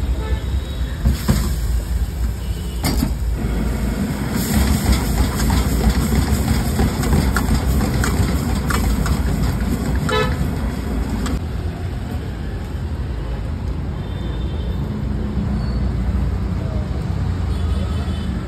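Steady street traffic noise with a brief vehicle horn toot around the middle, and scattered short clinks of a metal spatula and ladle against an iron wok.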